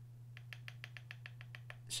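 Makeup brush tapping and clicking against the rim of a small jar of loose pigment as the brush is loaded and the excess shaken off: a quick, faint run of light clicks, about nine a second.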